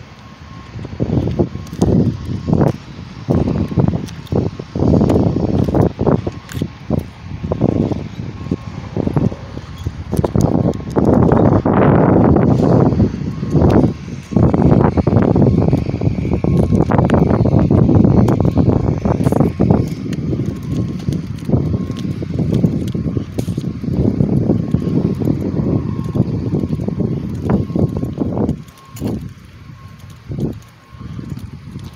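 Wind buffeting the phone's microphone in irregular gusts, a loud low rumble that rises and falls.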